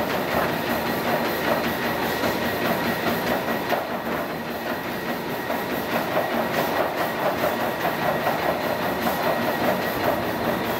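Spirit Fitness treadmill running, a steady high whine from its motor over the rumble of the moving belt, with a dog's paws striking the belt in an even rhythm of about two to three steps a second.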